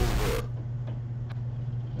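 A steady low electrical hum with a single faint click about a second in; the tail of louder played-back audio cuts off suddenly in the first half second.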